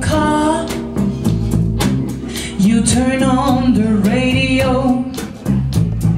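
A live band plays a rock song, with a woman singing lead over electric guitar, bass, drums and keyboards.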